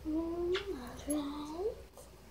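Two drawn-out pitched vocal calls, each under a second long. The first drops in pitch at its end and the second rises at its end, with a brief click between them.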